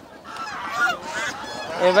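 Caged white domestic ducks giving several short, nasal honking calls.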